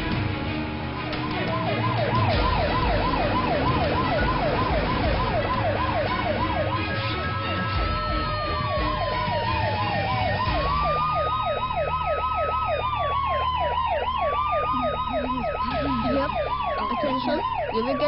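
Emergency vehicle sirens. A fast warbling yelp starts about a second in, and around seven seconds in it is joined by a second siren wailing in slow rises and falls, the two overlapping.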